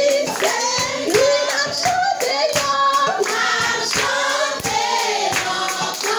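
A church congregation of mixed voices singing a hymn together, with steady rhythmic hand clapping, about two to three claps a second.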